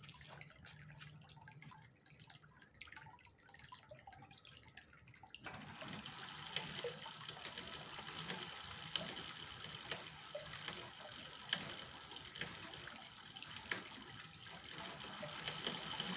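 A car alternator used as an electric motor starts turning about five seconds in, driving the bicycle chain and rear wheel with a steady whir. Light ticks repeat a little more than once a second: small clicks from the chain, which the owner says needs grease.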